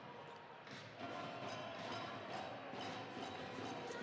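Crowd murmur in a gymnasium, with a basketball bouncing on the hardwood floor about once a second. The murmur grows louder about a second in.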